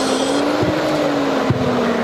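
A steady motor hum that sinks slightly in pitch, with one sharp tap about three quarters of the way through. Song playback cuts off just under half a second in.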